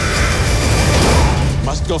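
A loud movie-trailer soundtrack mix: music with crashing impacts and shouting and screaming voices layered over it.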